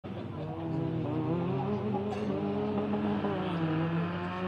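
Fiat 126p with a swapped-in 903 cc four-cylinder engine driven hard on a rally stage, its engine note rising and falling as it approaches.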